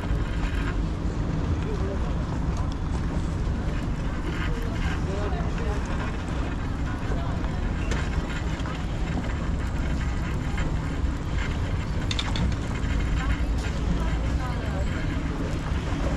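Steady low rumble and hiss of wind and water at an open seashore, with faint voices in the distance.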